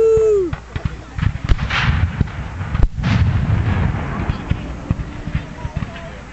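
Black-powder gunfire at a battle reenactment: one sharp report about three seconds in, with a rumble of further firing around it.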